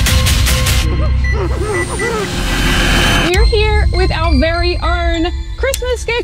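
Trailer soundtrack: a rapid stuttering of static-like noise for the first second, then a hiss, then a pitched voice with a held musical tone beneath it from about halfway through.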